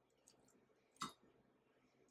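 Near-silent handling of crisp fried coconut shrimp: faint crackles of the crunchy coating, then one short sharp click about a second in as a shrimp is set down on a ceramic plate.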